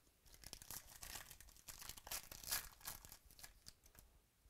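The wrapper of a 2017-18 Select basketball card pack being torn open by hand, crinkling and crackling in uneven bursts for about three seconds, loudest a little past the middle.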